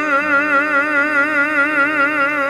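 Male bass voice holding one long sung note with a steady, even vibrato over a soft accompaniment, in a Russian romance.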